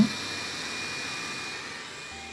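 Dreame robot vacuum running as it moves off its dock: a steady suction-fan hiss with a thin high whine, growing slowly quieter.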